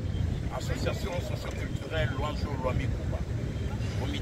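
Wind buffeting an outdoor microphone in a steady low rumble, with a man's voice heard in short snatches.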